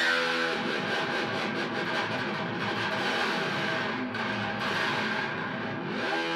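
Heavily distorted EVH Wolfgang electric guitar through an EVH lunchbox amp. It sets in suddenly and rings on for about six seconds while the open strings are dive-bombed with the tremolo bar, working the guitar to its limits.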